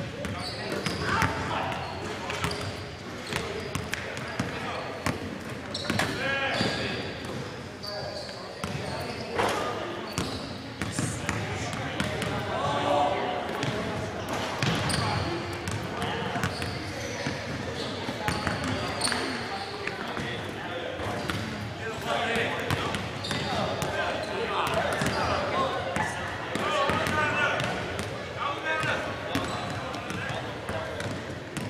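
A basketball bouncing repeatedly on a hardwood gym floor, each bounce a short sharp smack that echoes in the large hall, with indistinct voices in the background.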